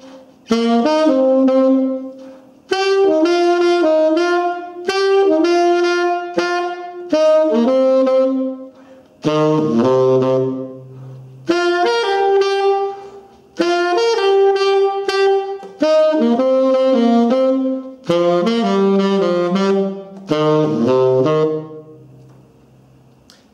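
Selmer Mark VI tenor saxophone playing a blues melody in short phrases of a few notes with rests between them, a new phrase about every two seconds, dipping to lower notes about halfway through and again near the end.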